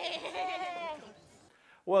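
A high-pitched voice holding a long, wavering call that fades out about a second in, followed by a quiet stretch.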